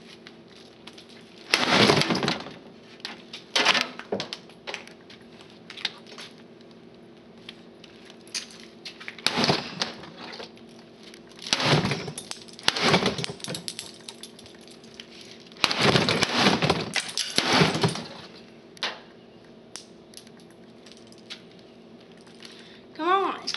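Hard plastic and metal clattering and cracking in a string of irregular bursts of about a second each, loudest near the start and again for a couple of seconds after the middle, the sound of an old CRT monitor and its parts being knocked about and broken.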